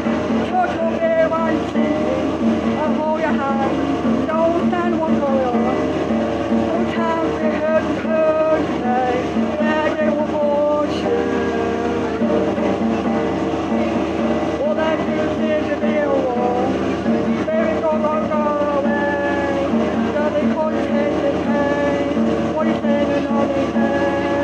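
A man singing, with a strummed acoustic guitar accompanying him; the sung melody slides and holds notes over steady guitar chords.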